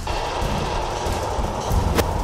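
Steady low rumble of a car driving, heard from inside the cabin, with a faint steady high tone above it.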